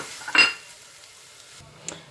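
Diced onion frying in oil in a non-stick pot, with a spatula stirring it: one loud scraping stir stroke about half a second in over a steady sizzle. The sizzle cuts off suddenly near the end, followed by a single click.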